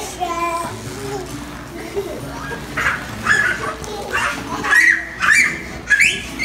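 Young children's wordless voices as they play: calls and high-pitched squeals, loudest in the second half.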